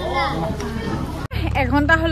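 Voices talking: first a high, child-like voice among the group, then, after an abrupt cut about a second in, a woman speaking over a steady low rumble on the microphone.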